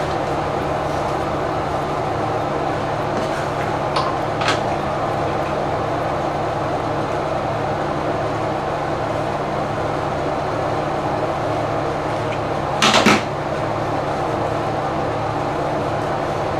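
Steady ventilation hum filling the room. Two faint clicks come about four seconds in, and a short, sharp clack near the end.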